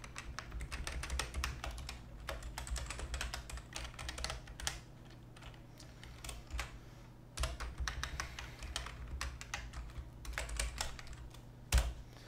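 Typing on a computer keyboard: runs of quick keystroke clicks with a lull of about two seconds just past the middle, then one sharper click near the end.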